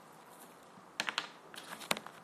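Orange peel being torn off by hand: a quick cluster of sharp crackling snaps starting about a second in, the loudest near the end.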